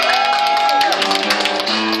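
Acoustic guitar strummed as accompaniment, with a woman's voice holding a long sung note through the first second.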